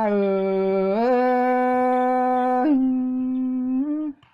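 A single voice singing one long drawn-out vowel in a Thái khắp folk song. It slides up into the note, holds it with a small step down about two and a half seconds in, and breaks off at the end.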